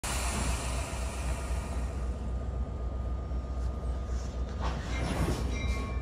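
NJ Transit commuter train of Comet V coaches with an ALP-45A locomotive at the platform, giving a steady low hum with a high hiss that fades away over the first couple of seconds.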